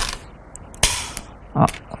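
Go stones clicking in a bowl as one is picked out, then a stone is set down on the wooden board with one sharp clack a little under a second in.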